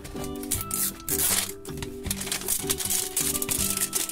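Background music with a steady melody, over a run of small clicks and crinkles from thin plastic film being picked and peeled off a hard plastic toy capsule.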